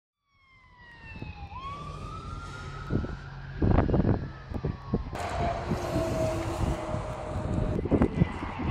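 An emergency vehicle's siren wails, first falling, then rising and holding high, over low rumble. Loud rumbling bumps hit the microphone a little before halfway. About five seconds in the sound cuts to a fainter, steadier tone over more rumble.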